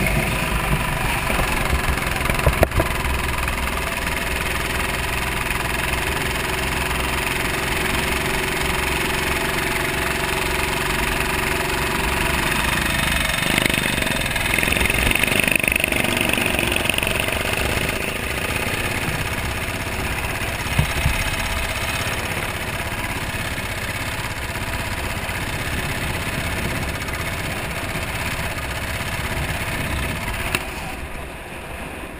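Racing kart's engine running on track, heard from a camera mounted on the kart itself. A steady held note runs for the first dozen or so seconds, then breaks off and the engine sound changes; there is one sharp click about three seconds in.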